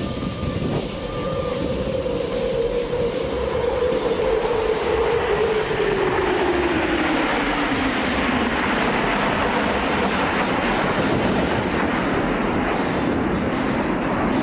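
A formation of F-15 fighter jets flying past overhead: a steady jet roar whose tone falls smoothly in pitch as they go by, turning into a broad, continuing rumble.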